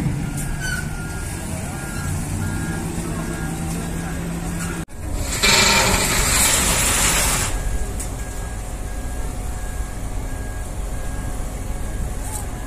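Heavy diesel machinery running, with a reversing alarm beeping steadily. About five seconds in, a loud hiss of released air lasts about two seconds, like a truck's air brakes.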